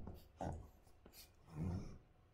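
Faint scratching of a stylus on a tablet in a few short strokes.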